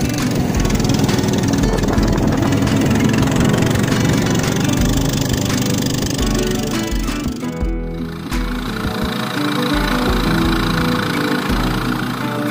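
Background music: an instrumental track with a stepping bass line. It breaks briefly about eight seconds in.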